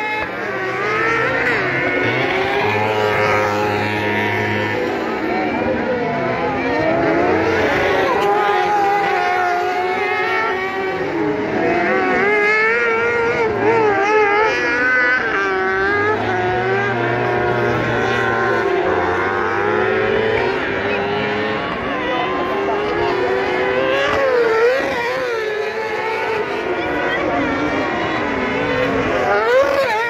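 Several cross karts' high-revving motorcycle engines racing around a dirt circuit, their pitch rising and falling over and over as they accelerate and lift off for the corners.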